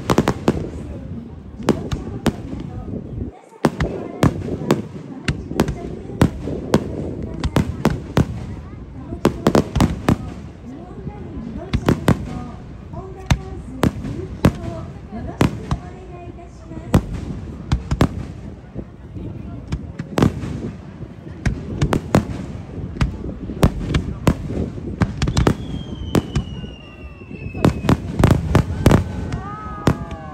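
Aerial firework shells bursting one after another in a continuous display, with sharp bangs and crackling in quick volleys, loudest in a rapid barrage near the end. A thin high whistle falls in pitch shortly before that barrage, and spectators' voices are heard between the bursts.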